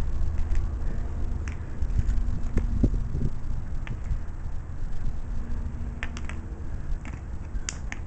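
Broken piston fragments clicking against each other and on concrete as they are handled and set down. There are a few scattered sharp clicks over a low steady rumble.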